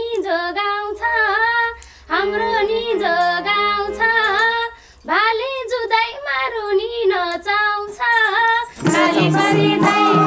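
A woman singing a Nepali folk (dohori) melody in phrases with short pauses, with only light backing. A little before the end the band comes in with harmonium, bamboo flute and madal drum.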